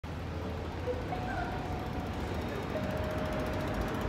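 Outdoor city ambience: a steady low rumble of distant road traffic, with a few faint held tones in the background.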